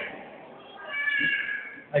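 A faint, high-pitched vocal call lasting about a second, in a lull between stretches of a man's amplified speech.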